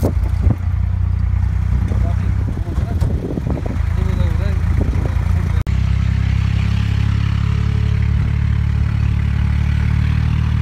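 Tractor engine running steadily, a loud low drone heard from the trailer it is pulling, with a momentary break just past halfway. Indistinct voices in the first half.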